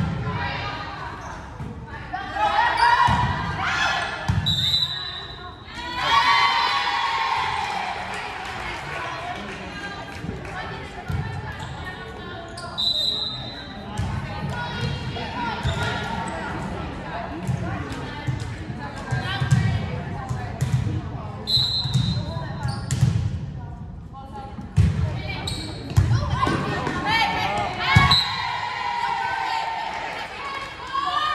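Volleyball being played in a gymnasium: repeated sharp ball hits and thuds echo through the hall, with players and spectators shouting in bursts. A short high tone sounds three times, about eight seconds apart.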